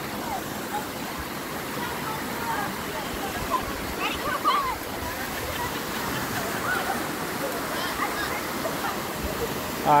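Creek water rushing steadily over a bare granite slab and down a small cascade. Faint voices call out in the distance now and then.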